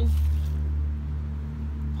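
A steady low droning hum, unchanged through the pause in speech, of the kind a distant engine or machine makes.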